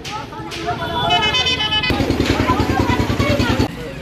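A motor vehicle passing through a talking crowd: a short horn toot about a second in, then its engine running with a rapid, steady beat for about two seconds.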